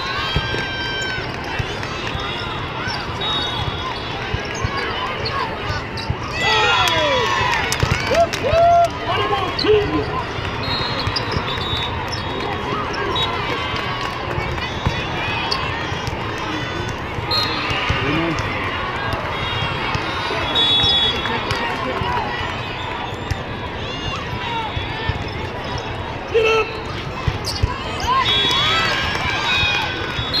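Indoor volleyball play: the ball is struck during a rally over a steady hubbub of spectators' and players' voices. Shouts rise loudest about seven to ten seconds in.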